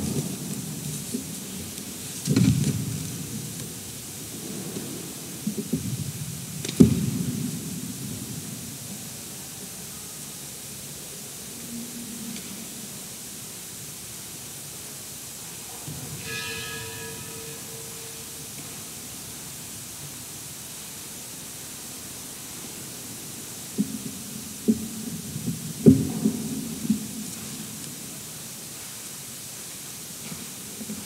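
Quiet room tone broken by a few sharp knocks and low shuffling, grouped near the start and again near the end, and a brief steady tone about halfway through.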